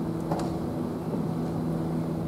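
Steady low room hum, holding a constant pitch, with one brief faint sound about a third of a second in.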